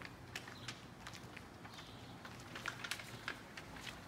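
Faint footsteps of people walking on pavement, heard as scattered soft clicks over a quiet outdoor background.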